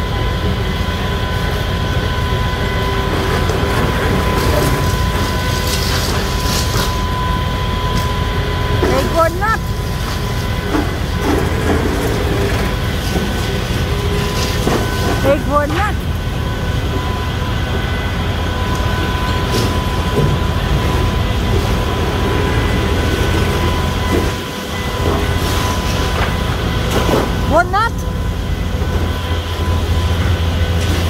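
Demolition excavator working: a steady, loud engine rumble with a constant high whine, some clattering of debris in the first few seconds, and three short rising squeals spread through.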